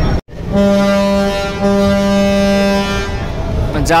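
Passenger launch's horn sounding one long steady blast of about two and a half seconds, starting half a second in after a brief gap, as the launch goes into back gear to pull out of the terminal.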